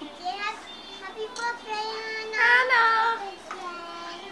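A young child singing in a high voice, with a long held note a little past halfway that is the loudest part.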